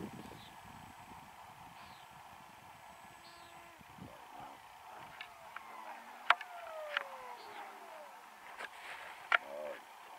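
Faint whine of the Hobbyking Sonic 64's 64 mm electric ducted fan falling steadily in pitch over a few seconds as the model jet comes in to land on grass, with a few sharp knocks, the loudest about six seconds in.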